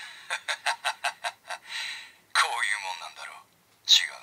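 A Kamen Rider Ouja voice clip played through the small speaker of the CSM V Buckle toy belt. It has a quick run of about eight sharp clicks, a short hiss, a brief burst of voice with no clear words, and a loud sharp hit near the end.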